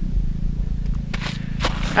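A steady low rumble of wind on the microphone. In the second half come a few short scraping crunches of boots on snow-covered ice.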